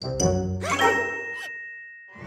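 Cartoon sound effect: a sudden music sting with a bright bell-like ding that rings on and fades away.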